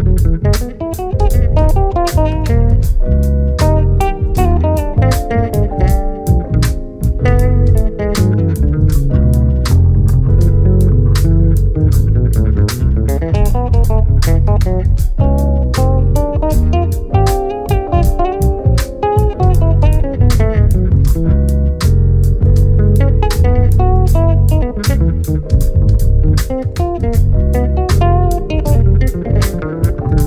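Electric bass guitars playing a samba-jazz arrangement: a busy melodic line up the neck over a deep bass groove. A steady beat of sharp percussion hits runs throughout.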